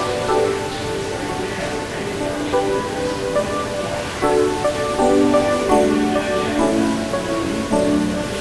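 Steady splashing of water from a row of small fountain jets falling into a stone trough, under instrumental music.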